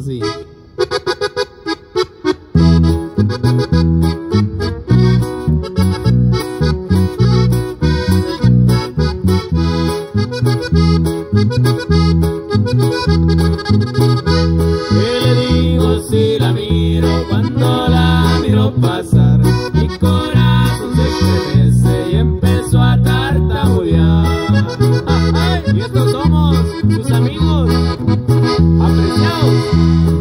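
Instrumental cumbia on button accordion, acoustic guitar and electric bass: the accordion carries the melody over a steady cumbia beat. After a sparse opening, the full band comes in about two and a half seconds in.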